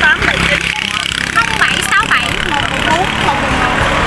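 Talking over the steady low hum of a nearby motor vehicle.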